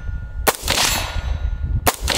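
Two shots from a CMMG Banshee AR pistol chambered in 4.6x30mm, about a second and a half apart, each followed by a ringing tail as the steel target downrange is hit.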